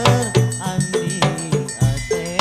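Hadrah ensemble music: a steady beat of drum and percussion strikes under a wavering melodic line.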